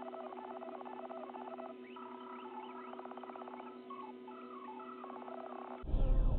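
Chicken clucking in several quick, rattling phrases over a steady low hum.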